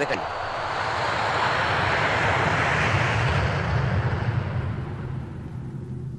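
Airliner engine noise: a loud rush that swells to a peak about halfway and then fades, over a steady low rumble.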